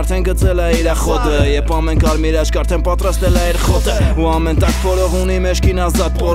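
Armenian hip-hop track: a male voice rapping over a beat with a steady deep bass line and regular drum hits.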